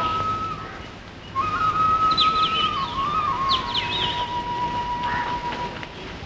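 A pure, whistled melody line held on long notes, stepping down in pitch in small steps and settling on a lower note, with short high bird-like chirps above it.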